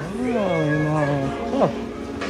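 A voice holding a long sliding note that rises, dips and levels off for about a second, then a short swooping "oh" near the end.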